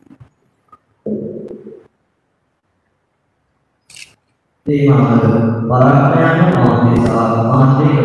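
A man's voice over the church sound system chanting a sung line, held on steady notes that change pitch now and then. It starts a little past halfway, after a brief vocal sound about a second in.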